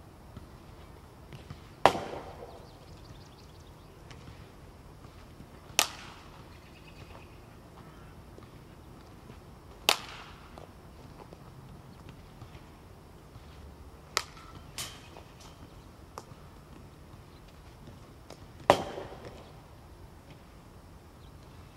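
Softball bat hitting fastpitch softballs in batting practice: sharp, ringing cracks of contact about every four seconds, the loudest near the start and near the end. Two lighter knocks come close together about two-thirds of the way through.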